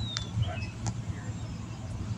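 Outdoor background sound: a steady low rumble with a few faint, brief chirps and ticks, one a short falling tone near the start.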